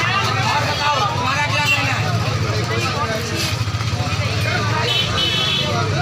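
People talking close to the microphone, over a steady low rumble.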